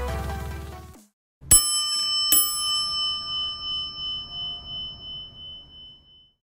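Electronic intro music fades out in the first second. After a short silence a bright bell is struck twice, under a second apart, and rings on with a slow, wavering decay.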